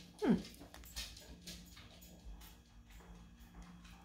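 Mostly quiet handling of a small metal candle tin, with faint ticks as it is turned in the hand. Near the start there is one short vocal sound that drops steeply in pitch.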